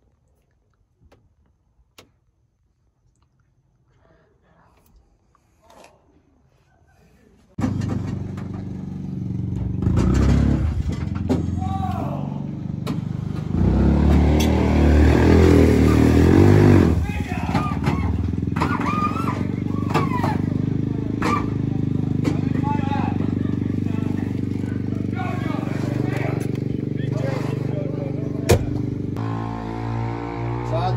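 Loud bass-heavy music with vocals from a pickup's subwoofer sound system, starting abruptly about seven and a half seconds in after a quiet stretch.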